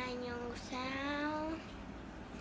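A young boy's voice holding two drawn-out sung notes, the second one slightly rising in pitch, in a sing-song chant.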